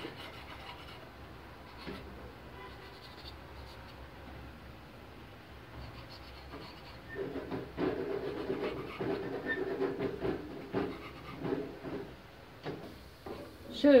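A kitchen knife cutting through rolled pastry dough against a marble counter: soft, irregular scraping and rubbing strokes, faint at first and louder and busier from about halfway through.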